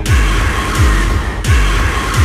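Electronic tekno music from a live set: a heavy kick drum whose pitch drops on each hit, about every two-thirds of a second, under a noisy high synth layer that cuts in and out with the beat.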